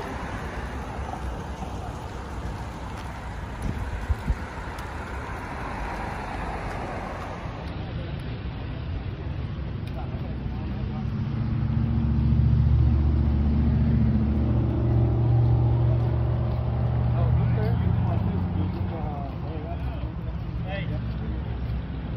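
Road traffic: steady noise of passing cars, then a loud, low engine rumble that swells about halfway through, holds for several seconds and fades.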